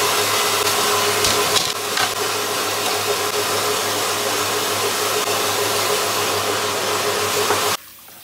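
Loud, steady whooshing of an electric motor-driven fan with a steady hum, cutting off suddenly near the end, with a few brief crackles about two seconds in.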